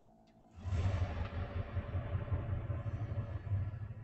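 A faint fading tone gives way, about half a second in, to a sudden, steady rumbling noise with a hiss over it that holds at an even level.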